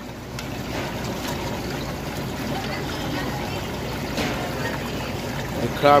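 Steady rushing and bubbling of water churning in live seafood holding tanks from the tanks' aeration and circulation, with a low hum underneath.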